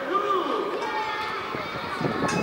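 Men's voices calling out to one another during a football training drill, with one drawn-out call near the start.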